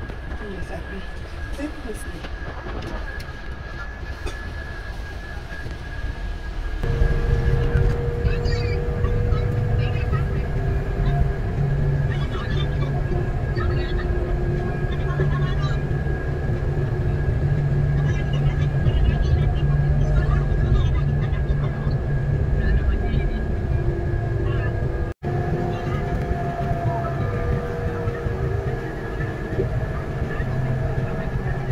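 Coach bus cabin while driving on a highway: steady engine drone and road rumble that grows louder a few seconds in, with a thin steady high whine over it. The sound cuts out for an instant near the end.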